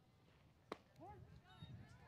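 A single sharp pop about two-thirds of a second in: a pitched softball hitting the catcher's leather mitt on a taken pitch. Faint distant voices follow.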